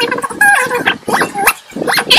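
A string of short animal-like calls whose pitch rises and falls, one after another.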